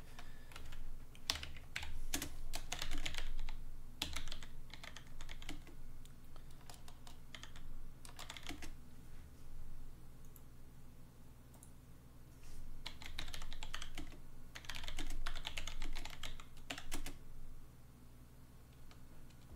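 Typing on a computer keyboard in bursts of rapid keystrokes, with a pause of a few seconds around the middle.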